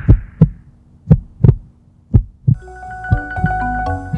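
Heartbeat: three slow lub-dub pairs of low thumps, about one pair a second. About two and a half seconds in, soft music with held tones comes in.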